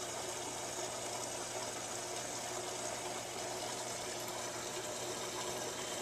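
Aquarium pump or filter running: a steady low hum with an even hiss of moving water.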